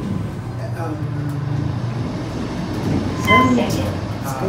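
Elevator car riding with a steady low hum from its machinery, then a short electronic chime about three seconds in.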